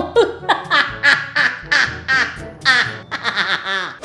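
Laughter in a string of short, high-pitched bursts, with music underneath.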